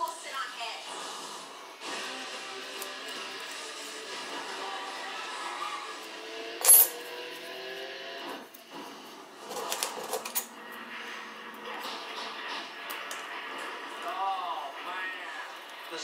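A metal razor blade set down on a hard tabletop with one sharp clink about seven seconds in, followed by a few smaller clicks around ten seconds. Background television speech and music run underneath.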